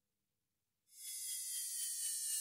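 Near silence, then about a second in soft background music fades in: a high, airy opening with several tones falling slowly in pitch.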